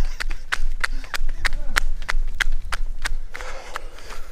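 Running footsteps in sandals slapping on a paved road, a quick even beat of about four steps a second.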